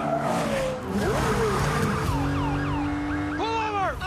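A classic Porsche 911 engine running hard with tyre noise as the car slides. Falling squeals in the second half, and a man's loud yell near the end.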